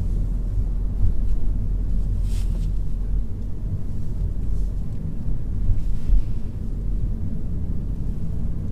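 Car driving slowly, a steady low rumble of engine and tyre noise heard inside the cabin.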